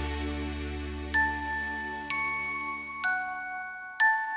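Bell-like chime notes ring out one at a time, about one a second from about a second in, each note ringing on, over a low sustained chord that fades away.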